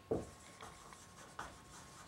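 Marker writing on a whiteboard: a few faint, short strokes, with one sharper tap just after the start.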